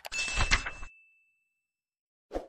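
Sound effect of a subscribe-button animation: a mouse click, then a bright bell ding that rings out and fades within about a second and a half.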